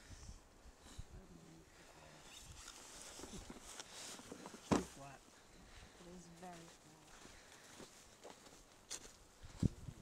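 Faint voices of people talking outdoors, with a sharp thump a little before halfway and another near the end.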